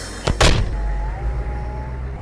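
Two heavy thuds in quick succession, then a military Humvee's engine running with a low rumble.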